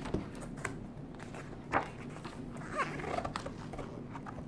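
Pages of a large hardcover book being turned and handled: paper rustling and swishing in several short strokes, the loudest a little under two seconds in.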